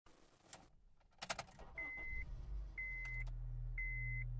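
A few sharp clicks, then a vehicle engine comes up to a steady low idle while a warning chime beeps about once a second.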